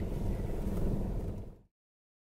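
Car engine and road noise heard from inside the cabin, a steady low rumble that fades out quickly about one and a half seconds in.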